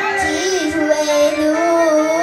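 A young girl singing into a handheld microphone, holding long notes that waver slightly in pitch.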